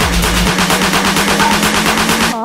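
Techno track in a build-up: a fast, even roll of short hits, about a dozen a second, over a held low synth tone, with the deep bass dropping out about half a second in.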